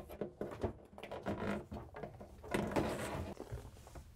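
Scattered light knocks and rubbing as a dishwasher's power cord and hoses are pushed through holes in a wooden cabinet wall, with a longer stretch of scraping and rustling about two and a half seconds in.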